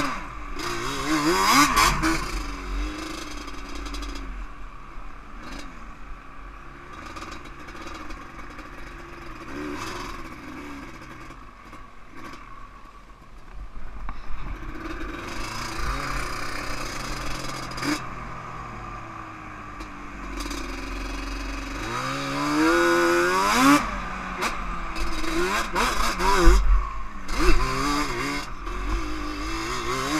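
Yamaha Banshee quad's two-stroke twin engine revving up and down while being ridden through sand, running steadier for a stretch mid-way, then climbing in a long rising rev followed by several sharp blips near the end.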